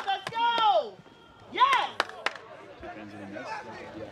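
Short shouts from soccer players on the pitch, one near the start and another around the middle, with a few sharp knocks of the ball being kicked in between.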